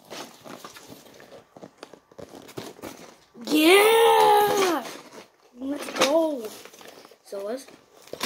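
A boy's loud, drawn-out excited shout, rising and falling in pitch, followed by two shorter vocal sounds. Before the shout, light crinkling and tapping from handling a cardboard toy box.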